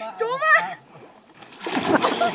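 A person falling into shallow muddy pond water with a large splash about a second and a half in. Before it, a person's short wavering cry is heard.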